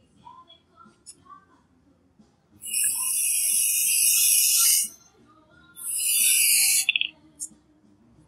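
Aerosol can of brake cleaner spraying in two long hissing bursts, the first about two seconds and the second just over a second, sputtering as it stops. The brake cleaner is being sprayed into a lower control arm's bushing housing to fuel a fire that burns out the old bushing.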